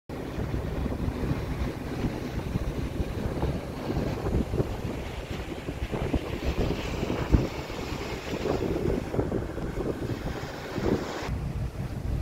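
Wind buffeting the microphone on the open deck of a ship under way, a gusty low rumble, with one sharper bump about seven seconds in.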